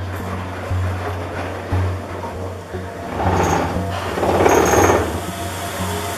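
Nyborg centrifugal spin extractor starting up, its motor running as the drum spins laundry up to high speed to throw the water out.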